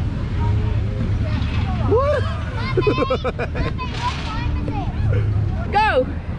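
Children's voices laughing and squealing, with quick repeated laughs in the middle and a high falling squeal near the end, over a steady low rumble and crowd babble.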